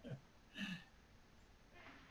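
Near silence over a video call, broken about half a second in by one brief vocal sound, a single short syllable of a voice.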